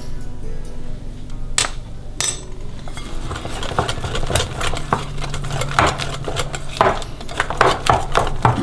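Wire whisk beating batter in a glass bowl: two sharp clinks about a second and a half in, then the wires click rapidly against the glass from about three seconds in.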